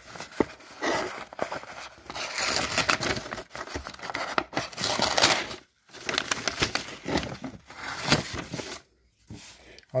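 Sanke Rescue multitool's knife blade cutting a sheet of paper held in the hand, the paper rustling and tearing in two long stretches with a short break between them. The blade drags and tears the paper slightly rather than slicing it clean, which the owner puts down to a rounded, badly formed grind.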